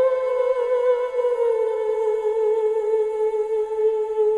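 Female soprano voice holding one long, unbroken note with gentle vibrato, easing slightly lower in pitch about a second and a half in.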